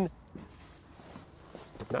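Faint rustling and shuffling of a person climbing into a car's back seat, a few soft knocks in an otherwise quiet cabin.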